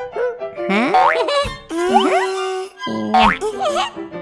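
Cheerful children's cartoon music interrupted near the middle by cartoon sound effects that slide up and down in pitch. The tune comes back near the end.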